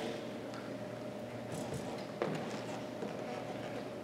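Quiet room tone of a large hall with a steady faint hum, a few soft ticks and one short knock about two seconds in.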